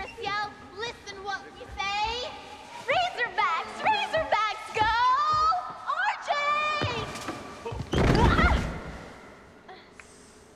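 A girl's high-pitched shouted cheer, yelled in rhythmic bursts with her pitch swinging up and down. About eight seconds in comes a loud thump with a cry as she crashes to the gym floor from a botched cartwheel. The thump fades away in the hall's echo.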